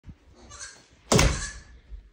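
A single loud thump about a second in, ringing on briefly, after some quieter rustling.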